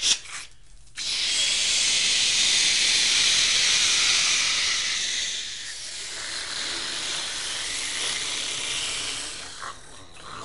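Toilet-flush sound effect: a rush of water that starts suddenly about a second in, is loudest for the next few seconds, then eases off and fades near the end.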